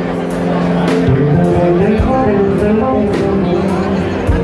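A live rock band playing: electric guitars over a drum kit, with cymbal hits cutting through.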